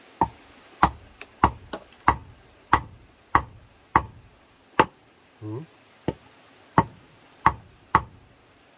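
A charred wooden log used as a mallet knocks a wooden stake into the ground, wood striking wood about a dozen times at a steady pace of roughly one and a half blows a second, with a short break about halfway through.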